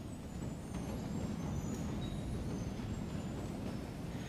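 Large audience sitting down together: a steady low rustle and shuffle of many people settling into their seats.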